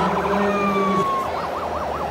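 Electronic siren from a radio-controlled model emergency vehicle's sound module: a wailing tone falling in pitch over a low steady tone, switching about a second in to a fast warble of about four or five pitch swings a second.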